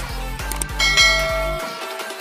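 Electronic background music with a steady beat, and about a second in a bright bell ding from a YouTube subscribe-button animation sound effect, ringing briefly. The beat's bass drops out near the end.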